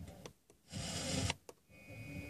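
Car FM radio tuning between stations: mostly muted, with a half-second burst of static hiss about a second in and a short click, then the next station's audio starting faintly near the end.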